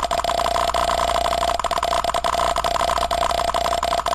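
A loud, steady buzzing drone like an idling motor, with fast, irregular clicking running through it.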